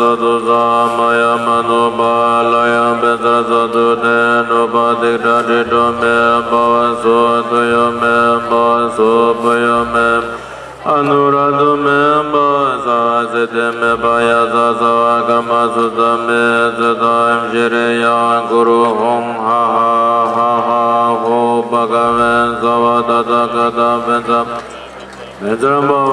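A man's voice chanting a Tibetan Buddhist ritual text, held almost on one note in long run-on phrases. There is a short pause for breath about eleven seconds in and another at the very end.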